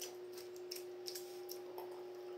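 Stainless steel kitchen tongs clicking faintly several times as they are handled and their arms tap together, over a steady faint hum.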